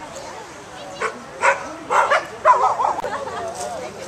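Akita dog giving a few short, sharp yips starting about a second in, then a wavering, warbling whine.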